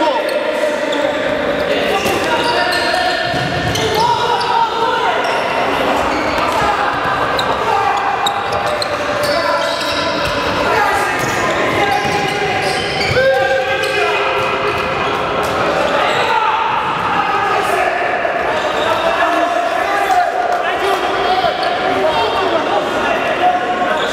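Indoor handball game: players' voices shouting and calling over one another, with the ball bouncing and thudding on the court, all echoing in a large sports hall.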